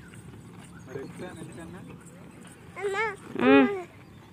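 A young child's high-pitched voice: two short wordless calls about three seconds in, the second louder than the first.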